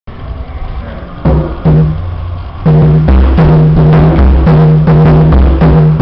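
Atabaque, a tall hand drum, struck with bare hands: two single strokes a little over a second in, then from under three seconds a steady, loud rhythm of strokes.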